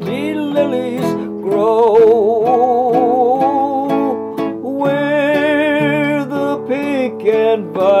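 A man singing a slow semi-operatic ballad with a wide vibrato on long held notes, accompanying himself on an acoustic guitar with steady plucked chords.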